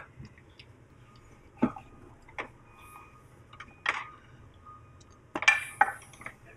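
A handful of separate metallic clinks and knocks as a heavy metal manufacturing test jig is handled and swung around on its pivot. The loudest cluster comes near the end.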